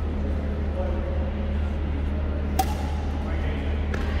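A badminton racket strikes the shuttlecock with one sharp crack about two and a half seconds in, and a fainter hit comes near the end, over a steady low hum.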